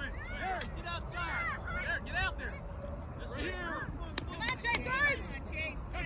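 Many voices of players, coaches and spectators shouting and calling out at once in short rising-and-falling cries, with no clear words. A low steady rumble of wind on the microphone lies under them.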